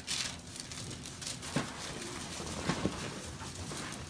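Rustling and a few soft knocks as a person turns over from face down to face up on a treatment table with a paper-covered headrest.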